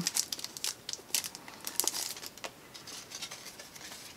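Crinkling and rustling of the small packaging around a prism sticker as it is handled and the sticker is pulled out: irregular crackles, busiest in the first couple of seconds, then sparser.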